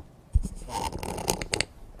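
Handling noise: a low thump about a third of a second in, then rustling with a few sharp clicks.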